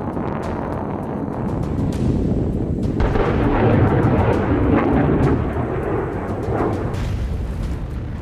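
Submarine-launched Trident ballistic missile launch: a deep, continuous rumble of the rocket motor that grows louder and fuller about three seconds in.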